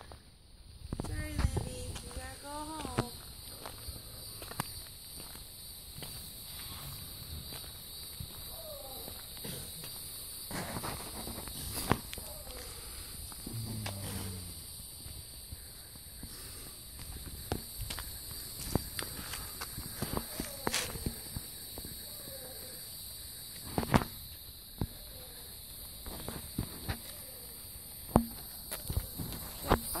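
Footsteps on a gravel track: irregular short crunches throughout, under a steady high-pitched insect drone. A few short gliding vocal sounds come about a second in and again around the middle.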